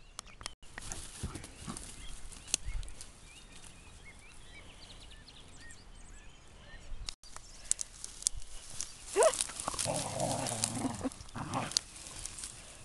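Scottish deerhound puppy and whippet playing in long dry grass: rustling and brushing through the grass. About nine seconds in, one of the dogs vocalises for about two seconds, first a rising yelp, then a rough, growly sound.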